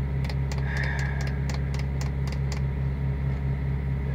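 Steady low hum of an idling car engine, with a run of light, irregular ticks, about three or four a second, that stops roughly two and a half seconds in.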